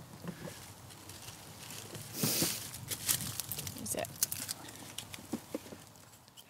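Soft rustling and scattered small clicks from hands and clothing handling an animal, with one short breathy hiss about two seconds in.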